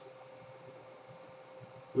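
Quiet room tone from a twin window fan running: a steady faint hiss with a thin steady hum.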